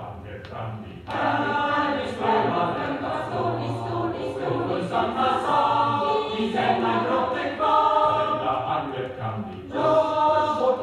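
Choir singing in Swedish, played from a vinyl LP; the singing thins out at the start and comes back in fully about a second in.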